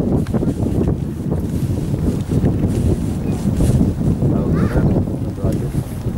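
Indistinct voices of people nearby, with a brief voice about four and a half seconds in, over a constant low rumble of wind on the microphone.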